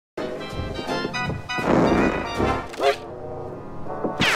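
Cartoon soundtrack of music and sound effects put through the 'G Major' pitch-layering effect, so that every sound is heard as a stack of several pitch-shifted copies at once. It is loudest between about one and a half and two and a half seconds in, with a short upward sweep near the three-second mark.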